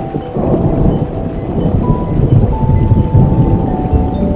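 A long low rumble of thunder that swells up about half a second in and rolls on, over steady rain, with soft sustained music notes held above it.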